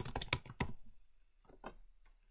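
Typing on a computer keyboard: a quick run of keystrokes, then a pause and a few more taps.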